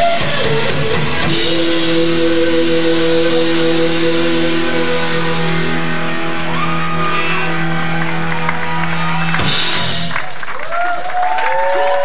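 Live rock band with electric guitars, bass and drums playing the ending of a song. A cymbal crash about a second in opens a long held chord, and a final crash near the end leaves the guitars ringing out.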